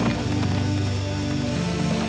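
Film score music with held notes, the loudest thing throughout. Beneath it are a few soft splashes of a galloping horse's hooves in shallow water.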